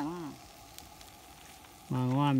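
Wood campfire burning, a soft steady hiss with a few faint crackles, between a voice trailing off at the start and another voice starting near the end.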